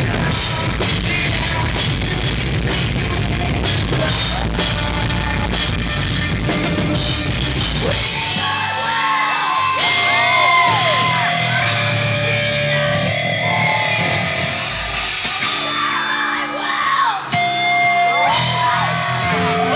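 Live post-hardcore rock band playing loud: drums, distorted guitars and bass with yelled vocals. About eight seconds in, the heavy low end drops away into a sparser passage with sliding high notes over the drums.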